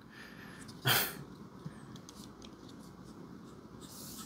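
A short, sharp exhale about a second in, then faint small clicks and rubbing as a folding knife's frame lock bar is pushed aside and the blade handled.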